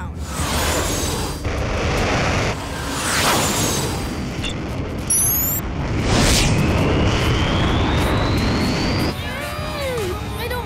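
Cartoon action sound effects: a dense rumble with two whooshes, about three and six seconds in, and a rising whine through the second half, mixed with background music. A short run of quick beeps sounds just after five seconds.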